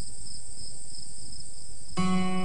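Crickets chirping at night: a steady high-pitched trill with a quicker pulsing chirp just beneath it.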